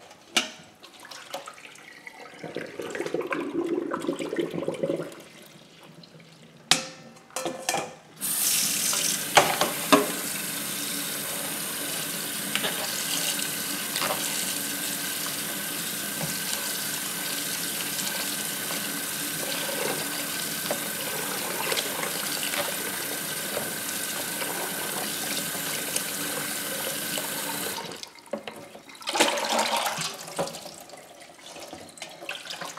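Kitchen tap running into a plastic colander, rinsing freshly boiled rice vermicelli. Softer splashing and a few knocks come first; the tap then runs steadily from about eight seconds in and is shut off near the end.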